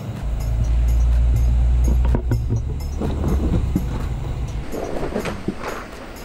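Ford F-150 pickup's engine working under load as its front tire pushes against a rock ledge: a deep rumble that eases off about four and a half seconds in. Rocks crunch and pop under the tire in the middle of it.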